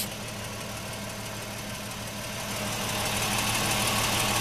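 A vehicle engine idling with a steady low hum. A hiss grows louder over the last second or so.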